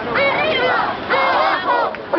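A crowd of protesters chanting and shouting a slogan together, voices overlapping, in two shouted phrases.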